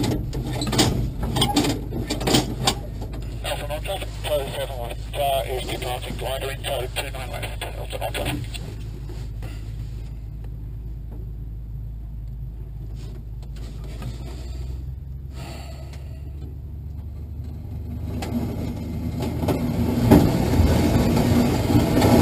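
Wind rushing over an open glider cockpit with a low steady drone beneath it, as the glider rolls across the ground for takeoff; the rush grows louder over the last few seconds as it picks up speed.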